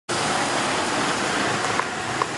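Steady wash of roadside traffic noise, with one brief click near the end.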